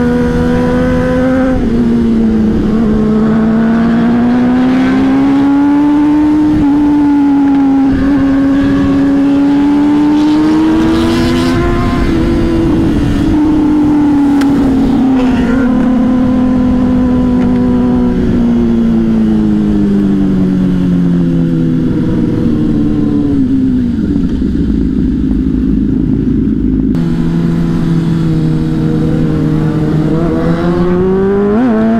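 Honda CBR600RR inline-four engine heard from onboard while riding, its pitch rising and falling with the throttle through the bends, over steady wind noise. Toward the end the revs drop low and then climb again.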